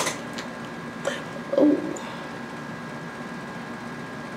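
Faint steady room noise with a thin, constant high whine, broken by a sharp click at the very start and a short exclamation ("Oh") about a second and a half in.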